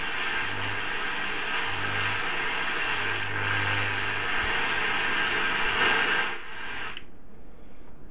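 Eddystone S680X valve shortwave receiver putting out steady static hiss from its speaker, tuned off-station, with a low hum coming and going. The hiss cuts off sharply about seven seconds in. The set is still receiving after the voltage checks.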